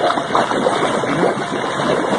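Hydromassage jets churning the water of a hot tub, a steady rushing, bubbling noise.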